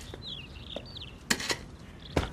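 Small birds chirping in short, falling, stepped notes, with two sharp knocks about a second and a half in.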